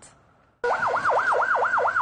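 Electronic police siren in fast yelp mode, its pitch sweeping rapidly up and down about four to five times a second, starting sharply about half a second in after a brief near-silent moment.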